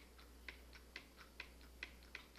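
Faint computer keyboard clicks, about four a second at uneven spacing: the delete key tapped again and again to remove points from a lasso selection.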